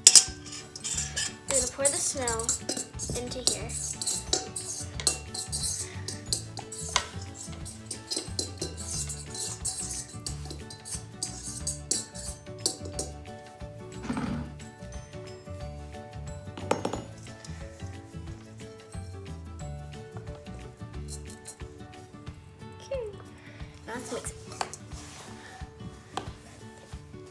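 Metal fork and spoon clinking and scraping against mixing bowls as slime is stirred, with many sharp clicks, most frequent in the first half and again near the end, over background music.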